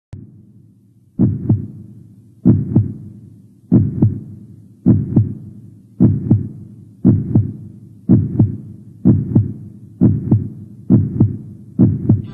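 A heartbeat sound effect: eleven low double beats, starting about a second in and coming gradually faster.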